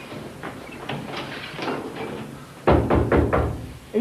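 A few faint taps and scuffs, then knocking on a door: about four sharp knocks in quick succession, starting nearly three seconds in.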